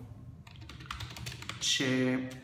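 Typing on a computer keyboard: a quick, irregular run of key clicks, with a man's voice starting again near the end.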